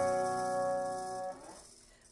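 Last chord of a song ringing on guitar and slowly fading, then cut off about a second and a half in.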